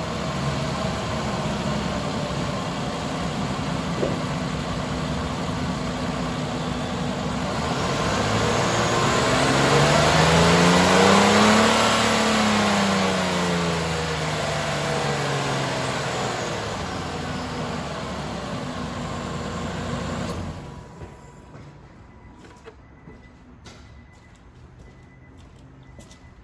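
2016 Nissan Pathfinder's 3.5-litre V6 running, a low-mileage engine that runs nice and strong: idling steadily, revved once in a slow rise and fall around the middle, back to idle, then shut off about three-quarters of the way through, leaving only faint clicks.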